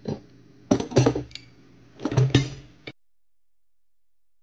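Steel hand tools clanking and ringing against the steel hydraulic thumb assembly, three separate clanks, then the sound cuts off suddenly a little before three seconds in.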